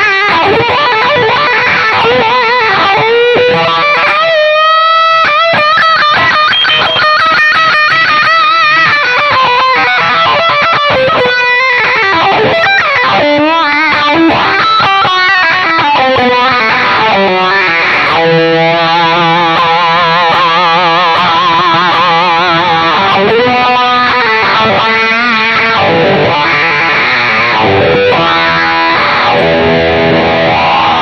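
Distorted electric guitar played through a hand-built pedal combining Tube Screamer-style overdrive and fuzz: lead lines with quick runs, notes bent upward early on, and long held notes with wide vibrato in the middle.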